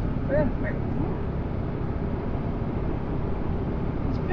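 Steady low rumble of an SUV's engine and tyres heard from inside the cab as it drives slowly, with a brief high vocal sound about half a second in.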